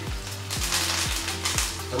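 Pork tenderloin sizzling as it sears in hot oil in a frying pan, under background music with a steady low beat of about two thumps a second.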